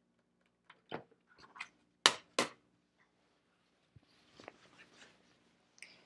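A few sharp clicks and knocks from quilting tools being handled on a cutting mat, the loudest two close together about two seconds in, then faint rustling of cotton fabric being picked up near the end.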